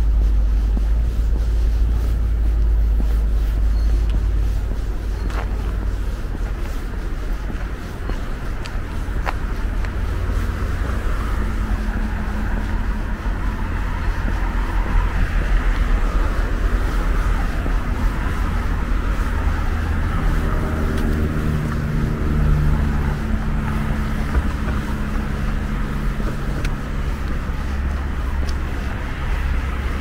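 Road traffic along a downtown street: cars passing with tyre and engine noise, over a low wind rumble on the microphone. About twenty seconds in, a vehicle's engine hum with a steady pitch joins for a few seconds.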